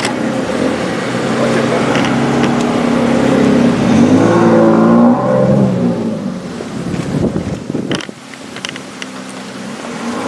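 A car engine running close by, its pitch rising around four seconds in and then settling and fading, with the overall sound quieter from about eight seconds in.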